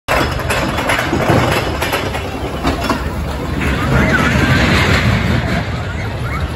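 Steel kiddie roller coaster train running along its track toward the camera with a steady rattling rumble, mixed with voices of people nearby.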